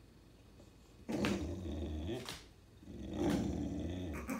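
A dog's low, drawn-out grumbling, twice: the first starts about a second in, the second just under three seconds in. It is a protest fit at being made to drop his new toy before going outside.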